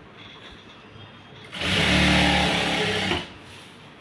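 JACK industrial lockstitch sewing machine stitching through silk fabric in one short run: it starts about a second and a half in, runs steadily for under two seconds and stops.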